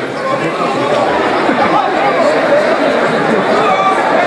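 Speech only: several voices talking over one another in a steady stream of chatter.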